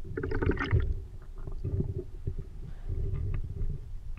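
Water sloshing and churning around a camera held half in and half out of the sea, muffled as if through its waterproof housing, with a few dull knocks as the freediver ducks under the surface.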